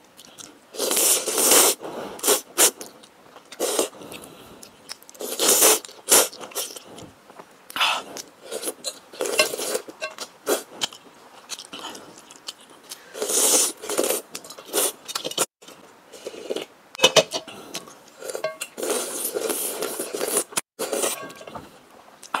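Close-up eating sounds: creamy, sauce-coated instant noodles slurped and chewed in repeated bursts, with wooden chopsticks scraping and knocking against a metal bowl.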